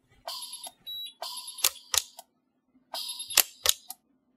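Sunstone Orion pulse arc welder firing on a nickel alloy strip: three short bursts of hiss with a faint tone, each ending in one or two sharp snaps of the weld pulse.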